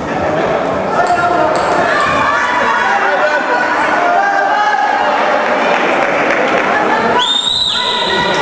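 Voices of spectators and coaches calling out, echoing in a large sports hall, with a brief high-pitched tone about seven seconds in.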